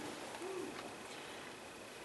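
Quiet room tone with a steady faint hiss in a pause between speech, and one brief, faint, low hum-like voice sound about half a second in.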